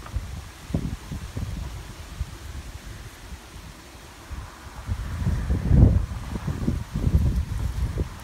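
Wind buffeting the microphone: an uneven, gusty low rumble that grows stronger about five seconds in.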